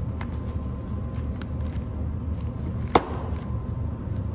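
A new high-pressure fuel pump being handled on a metal tray: a few faint clicks and one sharp knock about three seconds in, over a steady low rumble of shop background noise.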